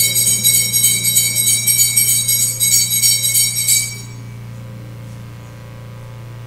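Altar bells rung at the elevation of the consecrated host: a bright, high jingling shaken in quick pulses several times a second, which stops abruptly about four seconds in.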